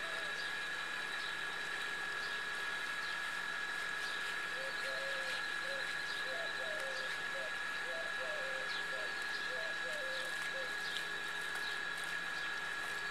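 Steady outdoor background hiss with a constant high whine, and faint short bird calls repeating from about four seconds in until near the end.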